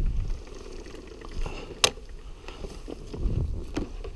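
Wind rumbling on a helmet camera's microphone, with scattered scuffs and knocks as a dirt bike is wheeled over dry ground. One sharp click comes a little under two seconds in.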